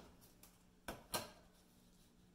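Two quick taps about a quarter second apart, a little under a second in: a ruler being set against paper on a wall.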